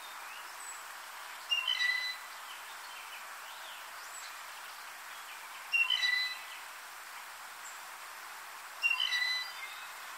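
Blue jay giving its squeaky gate (rusty pump handle) call three times, each a short creaky squeak a few seconds apart, over a steady background hiss.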